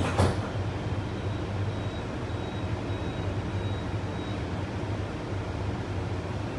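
Steady low hum inside a Sentosa Express monorail car standing at a station, with one brief knock just after the start and a faint high whine in the middle seconds.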